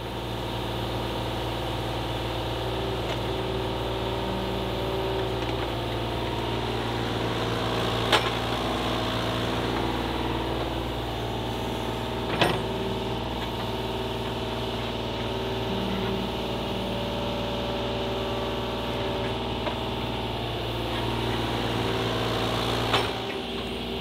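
Kubota U35-4 mini excavator's diesel engine running steadily under hydraulic load as it digs, its note shifting slightly with the work. Three sharp clanks of the bucket on rocky soil come about 8 and 12 seconds in and again near the end.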